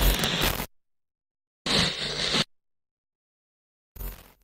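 Short bursts of a digital glitch sound effect with dead silence between them: one lasting about two-thirds of a second at the start, another lasting nearly a second in the middle, and a third starting right at the end.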